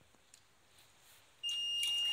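Buzzer of an Arduino smoke and flame detector switching on suddenly about one and a half seconds in with a steady high-pitched tone. It sounds because the smoke sensor has read high.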